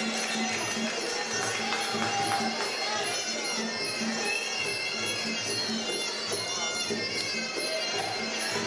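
Traditional Muay Thai sarama fight music. A reedy pi java oboe plays a wavering melody over a steady drum beat of about two beats a second, with faint high cymbal ticks keeping time.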